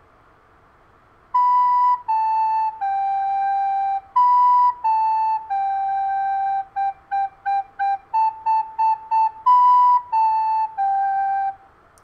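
Plastic soprano recorder playing a simple three-note tune on B, A and G: B-A-G held, B-A-G again, then four quick G's, four quick A's, and a closing B-A-G. Each note is tongued so it sounds separate. The tune starts about a second and a half in.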